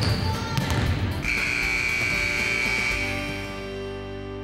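Basketballs bouncing on a hardwood gym court under background music. A steady high tone comes in about a second in and holds for about two seconds, and everything fades out near the end.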